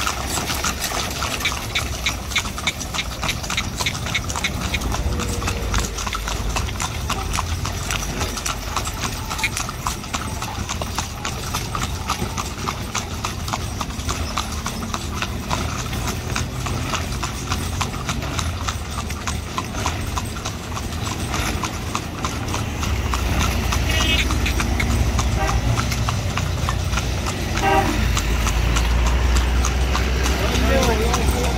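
Carriage horse's hooves clip-clopping steadily on a paved road as it pulls a horse-drawn carriage. A low rumble builds in the last several seconds.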